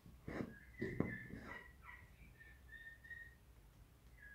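Faint, high whistle-like tones: several short notes and a longer held note near the middle, with a couple of soft handling noises early on.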